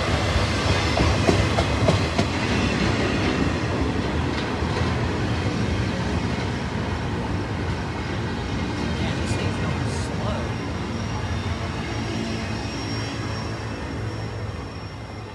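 Double-stack intermodal freight train rolling past, its well cars' steel wheels rumbling and clicking over the rail joints. The sound slowly fades as the last car goes by.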